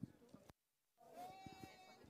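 Faint long held notes at one steady pitch, with the sound cutting out completely for about half a second near the middle.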